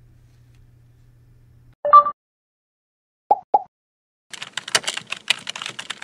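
A short two-note tone about two seconds in and two quick pops, then rapid computer-keyboard typing clicks from about four seconds on: a typing sound effect for an animated search bar.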